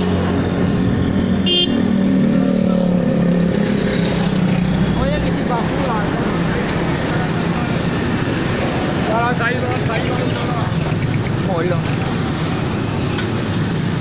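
Motorcycle engine running steadily while riding through slow, crowded road traffic, with a short horn toot about a second and a half in and other vehicles' engines and horns around it.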